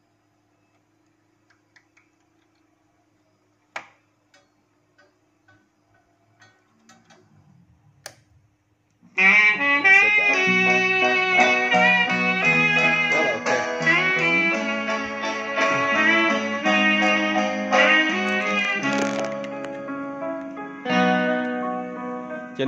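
Sharp GX-55 turntable mechanism moving the stylus to side B: a faint hum with a few small clicks. About nine seconds in, music from the record starts playing loudly through the system's speakers and continues.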